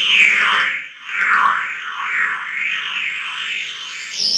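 Electronic music from a keyboard synthesizer: a warbling tone that swoops up and down in pitch again and again, about every second, dropping away briefly near one second in.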